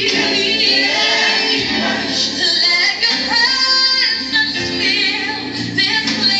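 Gospel worship song with women's voices and a choir singing long, held notes on the word "thee".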